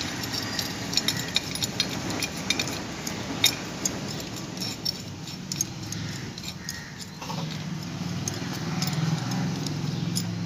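A steel scissor jack being cranked up by hand under an auto rickshaw: irregular small metallic clicks and ticks from the turning screw and crank handle, over a low steady rumble that grows toward the end.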